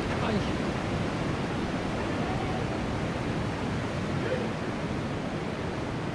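Steady rush of ocean surf breaking on the beach, an even wash of noise with no distinct strikes.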